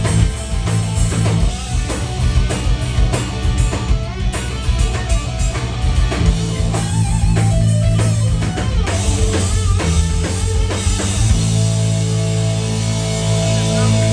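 Live rock band playing loud, with electric guitar, bass guitar and drum kit. About eleven seconds in the drumming stops and a held chord rings on.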